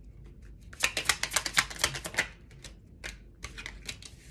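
A deck of tarot cards being shuffled and handled by hand: a rapid run of crisp clicks and snaps for about a second and a half, then a few scattered single clicks as a card is drawn.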